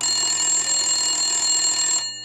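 Telephone ringing: one continuous ring lasting about two seconds that starts and cuts off abruptly.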